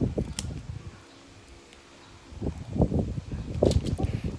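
Children's scissors cutting open a small plastic packaging bag, with plastic crinkling and handling noises; a short quieter stretch in the middle, then a run of irregular crackles and snips in the second half.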